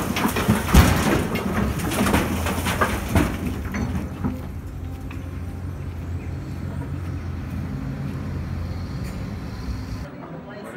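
Hydraulic excavator working a demolition: a steady low engine drone with crashes and clatter of breaking masonry and falling rubble over the first four seconds, loudest about a second in. The engine then runs on alone.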